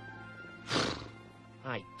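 Soft film underscore with held tones, cut through about two-thirds of a second in by one short, loud lion vocal sound that falls in pitch. A man's voice starts a word near the end.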